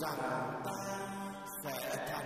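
A Vietnamese poem being chanted in a slow, sustained, melodic voice over instrumental music.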